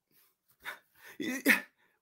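A man's voice making a few brief wordless vocal sounds at the microphone, short voiced bursts in the second half.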